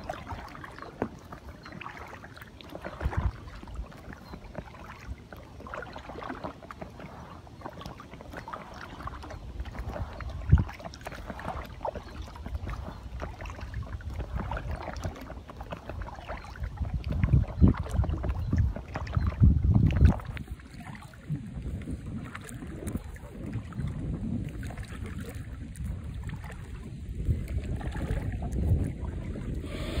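Small waves lapping and splashing against the hull of an Intex Challenger K1 inflatable kayak, in irregular little slaps, with wind on the microphone that gusts louder about two-thirds of the way through.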